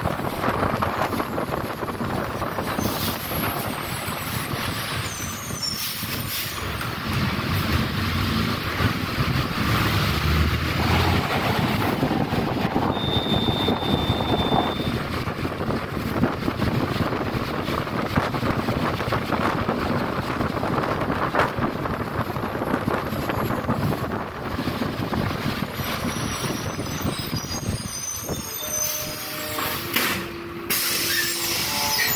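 City bus in motion heard from inside the cabin: continuous engine and road noise on wet streets, with a deeper rumble swelling for a few seconds before the middle. A brief high steady tone sounds about halfway through.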